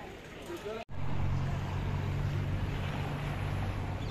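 Distant voices, then, after an abrupt cut about a second in, a louder steady low hum of an engine running nearby.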